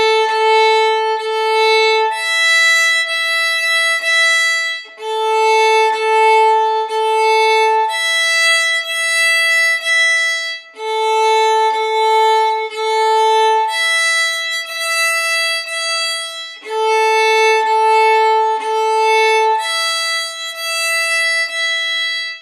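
Solo fiddle (violin) playing on open strings: three long bow strokes on the A string, then three on the E string, alternating about four times at waltz tempo. The bow changes are joined without any stop between strokes, the smooth, connected tone of a fluid wrist-and-finger bow change.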